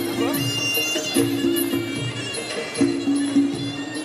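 Music playing over a loud arena sound system: a melody of held notes over a steady beat, with voices underneath.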